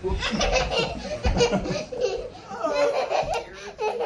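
A toddler laughing hysterically in repeated bursts, with a soft low thump about a second in.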